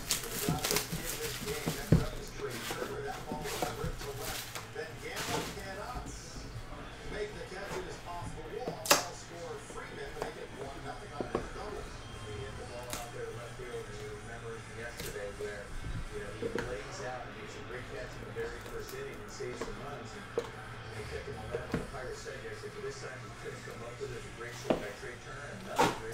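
Hands unwrapping and opening a cardboard trading-card box and handling the wrapped card packs inside: low rustling broken by a few sharp clicks and taps, the clearest about two seconds in and about nine seconds in.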